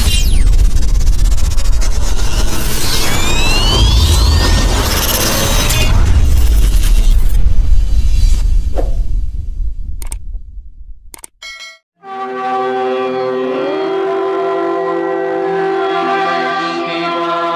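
Logo-intro sound effects: loud whooshing, booming noise with a deep rumble and rising sweeps, fading out about nine to eleven seconds in with a few short clicks. After a brief silence, a sustained synthesized musical drone starts, sliding up in pitch once and then holding steady.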